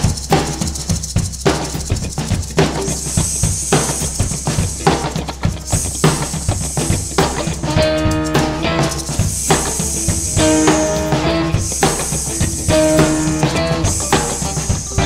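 Live funk-rock band playing an instrumental groove: a drum kit keeps a steady beat with recurring cymbal washes, and guitar and other pitched instruments join about eight seconds in.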